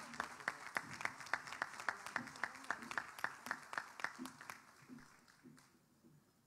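Audience applauding, with one person's hand claps standing out at a steady three or four a second; the applause dies away near the end.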